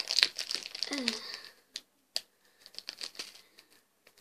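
Small clear plastic bag crinkling as it is handled and pulled at while being opened. The crinkling is dense for the first second and a half, then thins to a few scattered crinkles.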